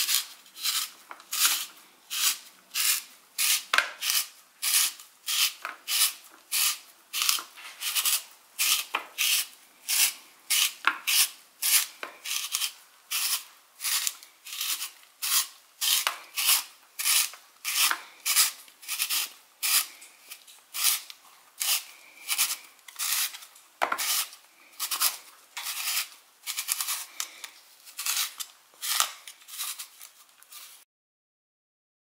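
Raw zucchini being twisted through a handheld hourglass spiralizer on its thick-noodle blade: a short rasping scrape with each turn of the wrist, about two a second.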